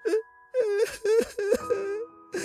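A voice actor sobbing and wailing in exaggerated mock crying: a short sob at the start, a brief pause, then a string of wavering, broken wails.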